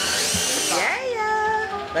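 Cordless drill boring into plywood: a steady motor whine that rises in pitch over the first second. It is followed by a lower, steady pitched sound for most of the next second.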